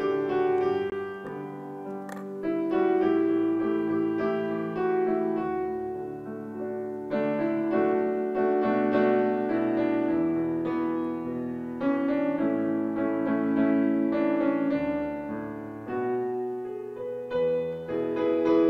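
Solo piano playing a school song, sustained chords changing every second or so. A short click about two seconds in.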